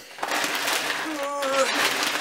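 Plastic bag or packaging rustling and crinkling steadily as it is handled, with a brief murmured voice sound in the middle.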